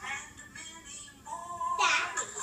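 Music with singing playing from a television, part of a Mickey Mouse birthday video; a sung note is held near the end before a louder phrase comes in.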